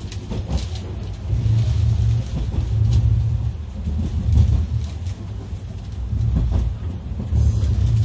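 Running noise inside a JR 485-series electric express car moving through the station tracks: a loud, low rumble from the bogies and traction motors that swells and eases every second or two, with a few faint clicks from the wheels on the rails.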